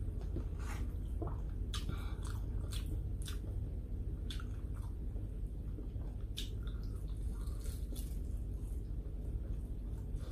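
Close-up chewing and mouth sounds of a person eating rice and saucy sautéed eggplant by hand: wet smacks and small clicks at irregular intervals, over a steady low hum.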